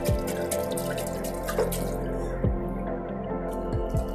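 Shallow water in an inflatable paddling pool splashing and dripping as a toddler pats at it, over background music with long held tones.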